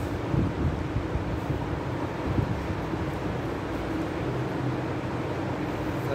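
Steady low rumbling hum of background noise, with a few soft low thumps.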